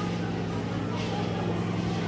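Shopping-mall background: a steady low hum under indistinct voices of people nearby.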